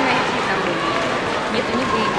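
Crowd chatter: many spectators talking at once, a steady murmur of overlapping voices.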